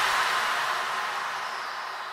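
A hissing noise sweep from an electronic dance track, fading away steadily with faint held tones underneath, in a break where the beat has dropped out.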